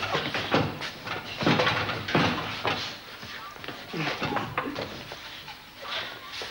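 Boys' voices laughing, shouting and crying out in a rough scuffle, with short irregular yells and bleating-like cries rather than clear words.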